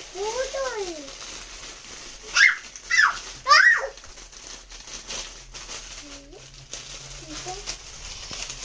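A small child's wordless voice: a sing-song call, then three short high yelps in quick succession, with light rustling of foil gift wrap being handled.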